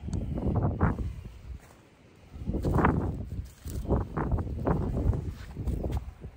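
Footsteps on dry beach sand, a few irregular steps with a short pause about two seconds in, over a low rumble of wind on the microphone.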